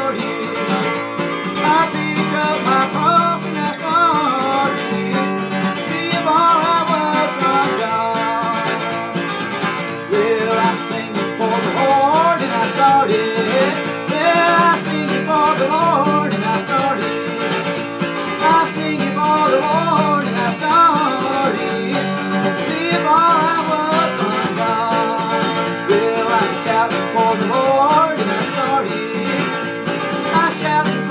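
Steel-string acoustic guitar with a capo, strummed steadily in a country style while a man sings along.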